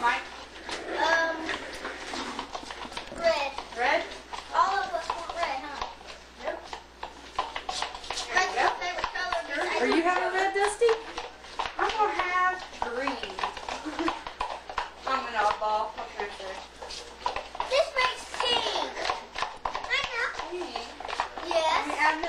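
Overlapping chatter of children's and adults' voices, too jumbled for words to be made out.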